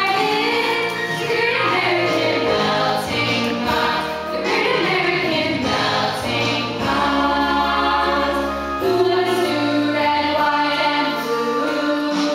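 Children's voices singing together in a school musical number, with instrumental accompaniment holding long low bass notes.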